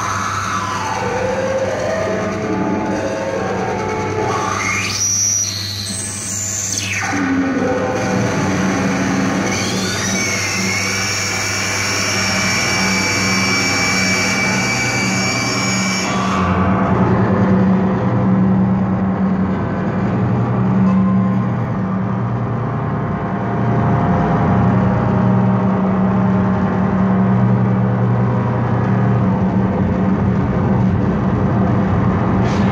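Loud live electronic noise music played on a groovebox through effects pedals: a dense, continuous drone over a steady low hum. About five seconds in, high sweeping glides rise and fall; from about ten seconds, steady high tones hold until about sixteen seconds, when the treble cuts off suddenly and leaves the low drone.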